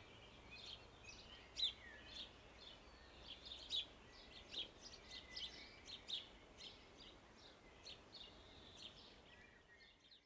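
Small birds chirping faintly: many short, irregular calls, with a few thin whistled notes, over quiet outdoor hiss.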